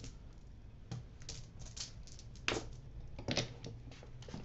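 A handheld spray bottle spritzed in several short hissing puffs over rune dice on a table, mixed with light clicks of the small pieces being handled.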